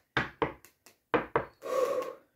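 A deck of playing cards shuffled by hand: about five short slaps and swishes, then a longer rubbing sweep of the cards near the end.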